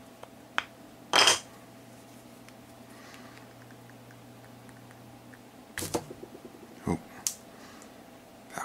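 Small handling noises of hands working small plastic parts: a short scrape about a second in, then a quick run of small clicks and two sharp knocks near the end, over a faint steady hum.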